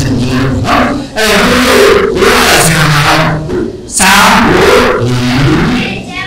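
A man's voice through a microphone and loudspeakers, speaking loudly and forcefully in long phrases with short pauses. It is strained enough to sound like a roar.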